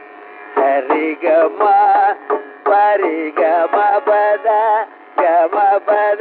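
Carnatic classical concert music from an old radio recording: a male voice sings short, heavily ornamented phrases with quick pitch turns, broken by brief pauses, and the sound is thin and narrow-band.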